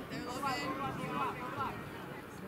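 People's voices calling out, too indistinct to make out words.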